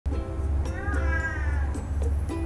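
A cat meowing once, a long call that rises and falls in pitch, over light background music.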